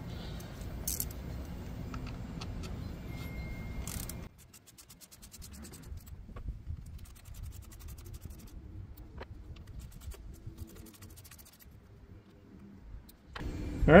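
Hand tools working on an engine bay: a ratchet clicking and metal parts and sockets clinking, over a steady low background rumble that drops away suddenly about four seconds in, leaving quieter rapid clicks and ticks.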